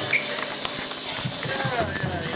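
Voices talking and laughing in a busy room after the music stops, with a few sharp taps or knocks.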